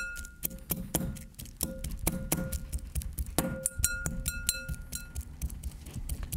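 A fork jabbing and mashing avocado in a glass mixing bowl: quick irregular clicks of the tines against the glass. A few harder strikes set the bowl ringing with a clear tone that holds for a second or two, the strongest about three and a half seconds in.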